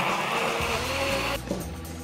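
Electric blender running and stopping suddenly about one and a half seconds in, blending bananas and blueberries into a smoothie, over background music.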